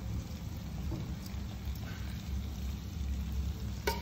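Steady low kitchen hum with faint handling of slaw in metal tongs, and one sharp click near the end as the tongs knock.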